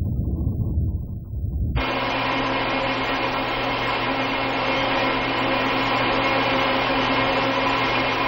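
A low rumble that cuts abruptly about two seconds in to the steady hum of racks of electronic equipment and their cooling fans: an even noise with several constant tones in it, unchanging to the end.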